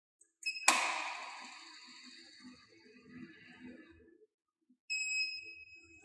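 Semi-automatic biochemistry analyzer aspirating distilled water for its water blank: a sudden high ringing tone about half a second in that dies away over a few seconds over a faint low running sound, then a steady electronic beep about a second long near the end.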